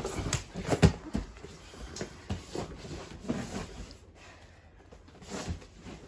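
Bodies and bare feet thudding and scuffing on foam grappling mats, with the loudest thud about a second in, then softer scattered knocks and short breaths.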